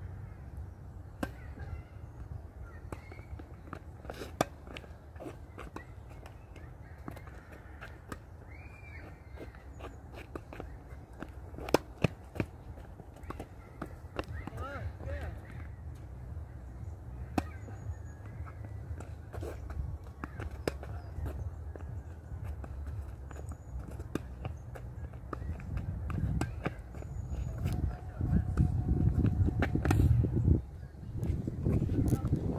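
Outdoor tennis court sounds: scattered sharp knocks of tennis balls off racket strings and the hard court, the loudest a quick pair about halfway through. Under them a low rumble on the microphone grows louder near the end, with a few faint bird chirps.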